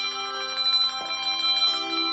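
Handbell ensemble playing a fanfare: several bells ring together in chords, their tones sustaining and overlapping, with new bells struck about a second in and again shortly before the end.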